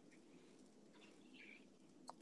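Near silence: faint room tone over a video call, with a few faint small noises about a second in.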